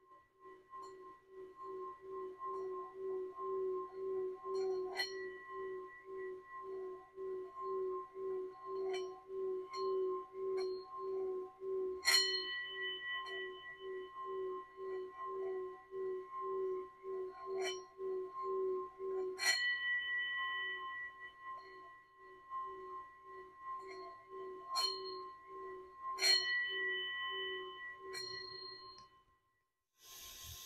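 Metal singing bowl rubbed around its rim with a wooden mallet. It sings a steady low tone that wobbles about twice a second, over higher ringing overtones. The bowl is struck four times, roughly every seven seconds, and each strike brings in a brighter ring. Lighter taps fall between the strikes, and the tone fades out near the end.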